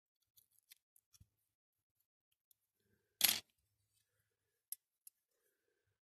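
Small metal tool clicking and scraping against a Corgi Jaguar XK120 diecast model as its parts are prised off, with one much louder sharp clatter about three seconds in and a couple of lighter clicks after it.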